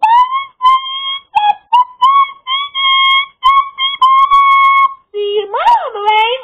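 Loud whistled notes, short and repeated in a staccato rhythm, mostly held on much the same pitch. Near the end comes a lower note with a swoop that rises and falls.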